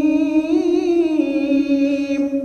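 A man reciting the Quran holds one long note on a single vowel, a drawn-out madd elongation in tajweed-style recitation; its pitch lifts a little in the middle and settles back.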